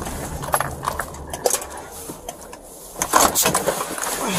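Body-worn camera handling noise inside a car: irregular clicks, knocks and rustling as the wearer moves, with a louder cluster of clatter and rustle about three seconds in.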